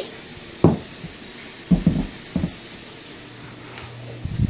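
Siberian husky vocalizing while excited during play: one sharp bark-like yip about half a second in, then a few short low woofs around two seconds in.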